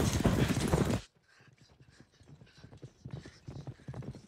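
A horse galloping, its hoofbeats a quick run of thuds on the ground that grows steadily louder. A loud wash of sound before them cuts off suddenly about a second in.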